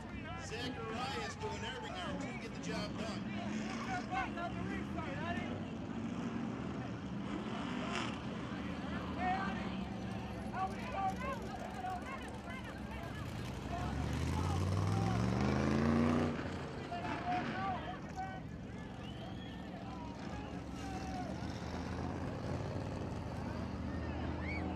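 Modified race car engines idling under scattered voices of people talking and calling out; about 14 seconds in, one engine revs up, rising in pitch for about two seconds before dropping back.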